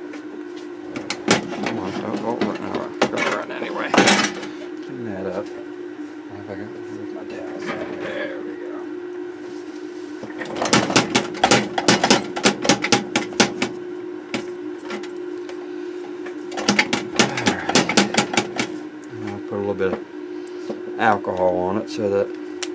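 A cloth scrubbing the solder side of a circuit board, in two runs of quick rubbing strokes about halfway through and again a few seconds later, wiping off neutralizer from traces corroded by a leaking electrolytic capacitor. A few sharp clicks come in the first few seconds, over a steady low hum.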